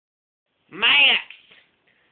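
A cat meowing once: a single drawn-out call that rises and then falls in pitch.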